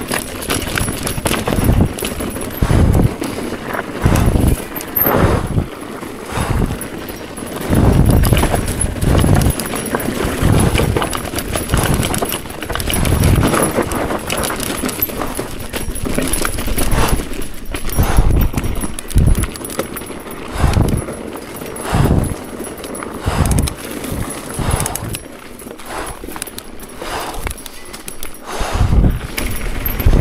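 Mountain bike riding fast down a rough, rocky dirt trail: an uneven run of knocks, rattles and low thumps as the bike jolts over rocks and roots, picked up by a camera mounted on the handlebars.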